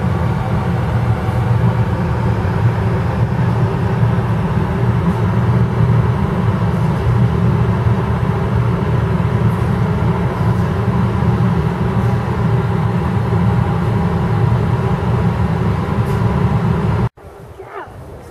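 A steady, loud, low mechanical drone with faint steady tones above it. It cuts off suddenly about a second before the end.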